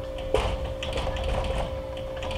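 Dry-erase marker writing on a whiteboard: short scratchy squeaks and taps of the tip as the letters are drawn, with a sharper tap about a third of a second in.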